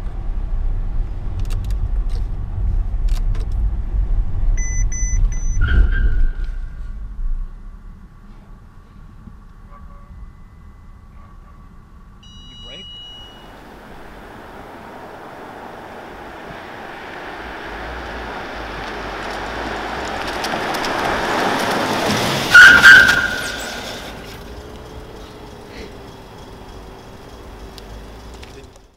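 Mercedes-Benz S-Class in motion at about 20 mph, heard from inside the cabin as a steady low road rumble. About five seconds in come three quick warning beeps, and the rumble dies away a couple of seconds later as the car brakes itself to a stop (PRE-SAFE Brake with pedestrian recognition). Later, a rising rush of tyre and road noise builds to a single very loud, short burst a little before the end, then fades.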